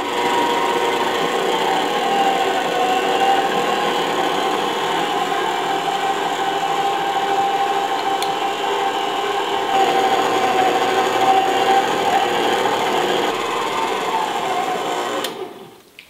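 Electric stand mixer running on its lowest speed, its wire whisk beating cake batter as flour and soda are added. The motor whine holds steady, drops a little in pitch for a long stretch mid-way, then rises again. It switches off with a click near the end.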